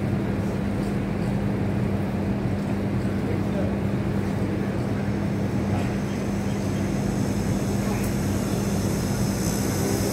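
A steady machine hum at a constant low pitch, with an even rushing noise underneath.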